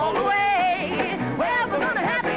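A male and female rockabilly duo singing together, with sliding, swooping vocal notes, over electric guitars and a backing band.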